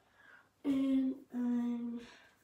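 A voice humming two held notes, the second a little lower and longer than the first.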